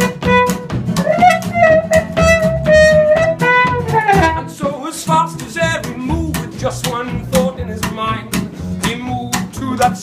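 A small live folk band playing an instrumental break: a trumpet holds long notes and slides down about four seconds in, over strummed acoustic guitar and a low bass line.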